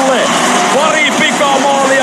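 A television commentator's play-by-play voice over the steady background noise of an ice hockey arena.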